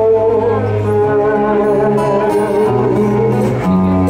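A live band playing an instrumental passage between sung lines: acoustic guitar and keyboard holding sustained chords, the low notes changing every second or so.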